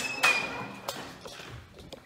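A door thudding shut about a quarter second in, with a short high squeak as it closes, then a few faint footsteps and taps.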